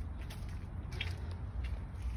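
A low steady rumble, with a few faint scuffs and clicks and a short hiss about a second in.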